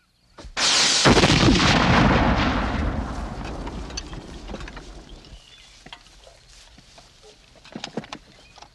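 A black-powder field cannon firing: one sudden loud boom about half a second in, its rumble dying away over some four seconds.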